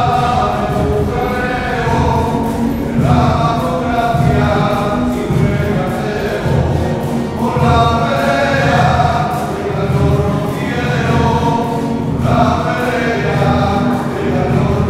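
A choir singing the offertory hymn of a Catholic Mass, in phrases of a few seconds each.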